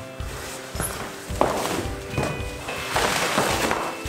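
Clear plastic packaging wrap crinkling and rustling in bursts as it is pulled off a large panel, with a few knocks, over background music with held notes.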